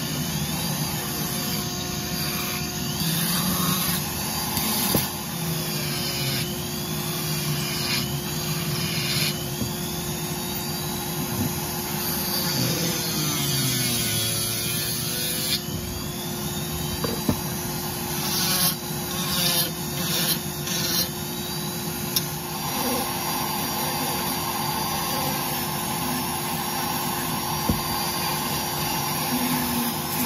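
Foredom flex-shaft rotary tool with a Saburrtooth carbide burr grinding cottonwood to round out a carved fish body. Its whine rises and falls in pitch as the burr bites and is eased off. A dust-suction vacuum runs with a steady hum underneath.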